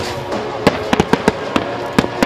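Fireworks bursting in a quick, uneven series of sharp bangs, about eight in two seconds, with the show's music playing underneath.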